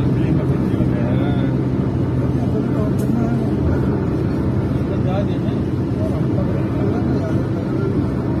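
Steady engine and road noise heard inside a moving car's cabin, a constant low hum, with faint voices talking underneath.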